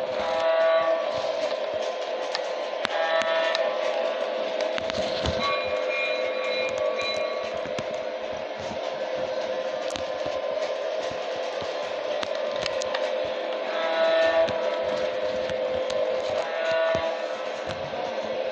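Toy Santa Fe Super Chief train set running around its track with a steady motor hum. Its electronic horn sounds in short blasts several times, and a higher tone is held for a couple of seconds about six seconds in.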